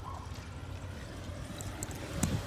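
Wind buffeting a phone microphone outdoors: a steady low rumble.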